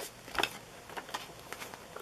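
A printed paper page being turned and handled: a short rustling swish about half a second in, then a few faint soft ticks of paper.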